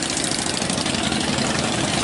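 A motorcycle engine running steadily and fairly loudly.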